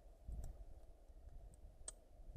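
Faint clicks of climbing hardware being handled, with a sharper click near the end, over a low bump about a quarter second in.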